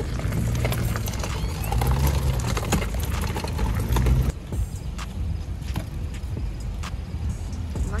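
Wind rumbling on the microphone, with scattered clicks and rattles from a loaded fishing cart carrying rods, a cooler and a net. The sound drops quieter about four seconds in.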